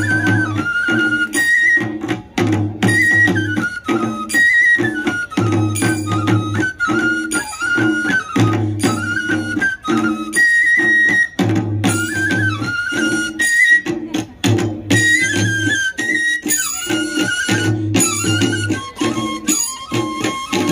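Tripuri Hojagiri folk music, amplified: a high bamboo flute (sumui) melody in short repeated phrases over a steady drum beat.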